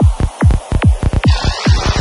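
Psytrance electronic music in a build-up: a rapid roll of deep synthesized drum hits, each falling in pitch, about five or six a second. A rising noise sweep comes in past halfway.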